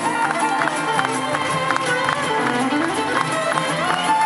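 A live acoustic bluegrass band plays a fast tune: fiddle, banjo, acoustic guitars and bass, with quick picked notes. One pitch slides upward over the last second or so.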